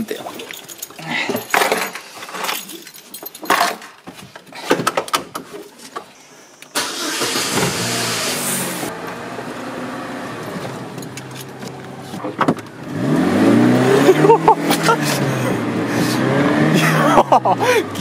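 Older car's engine: short clicks and handling noises, then a sudden loud start about seven seconds in, followed by the engine running; from about thirteen seconds its pitch rises and falls several times as the car accelerates.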